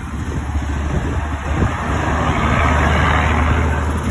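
Customized small motorcycle's engine running with the bike in gear, its sound swelling from about two seconds in as the throttle is opened to pull away.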